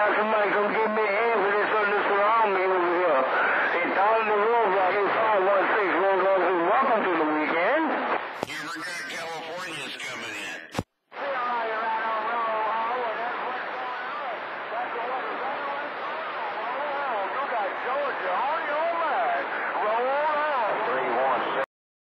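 CB radio on channel 28 receiving distant skip: several far-off stations talking over one another, garbled and thin through the radio's speaker. About eight seconds in, the voices give way to a couple of seconds of noise, then a brief dropout, before the jumble of voices returns.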